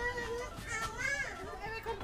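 A young girl crying: a few short, high, wavering cries.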